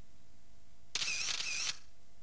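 A brief noisy mechanical burst, a little under a second long, about a second in, heard over a faint steady hum and tape hiss.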